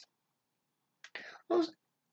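About a second of silence, then a short spoken word or two from the narrator's voice.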